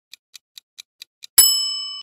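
Countdown timer sound effect: quick clock-like ticks about every quarter second, then a bright bell ding about 1.4 s in that rings out and fades, marking that time is up.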